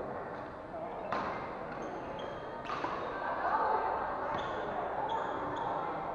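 Badminton rally in a large hall: two sharp racket hits on the shuttlecock about a second and a half apart, with short high squeaks of shoes on the polished floor, over the background chatter of spectators.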